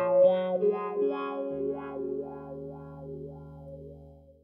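Electric guitar played through a Dunlop Cry Baby GCB95 wah pedal and amp: a last short phrase with bent notes, then a lower chord comes in about a second and a half in and rings on, fading away.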